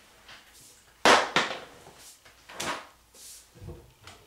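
Wooden bathroom vanity drawers and cabinet doors being yanked open and shut in a hurried search: a loud clatter about a second in, another about a second and a half later, then fainter knocks near the end.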